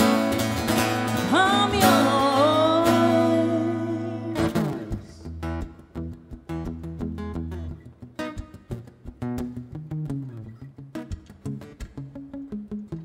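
Steel-string acoustic guitar with phosphor bronze strings, strummed chords ringing under a held, wavering sung note. About four seconds in the chord is cut off and the guitar carries on quietly with single picked notes stepping downward.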